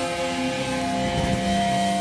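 Live band playing loud, heavily distorted electric guitars and bass, holding sustained notes over busy low drumming. The held bass note drops to a lower pitch a little over a second in.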